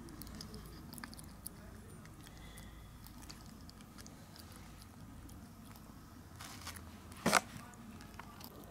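Kitten licking and smacking at wet food pushed from a syringe into its mouth: a run of faint, wet clicks. A short, louder burst of noise comes near the end.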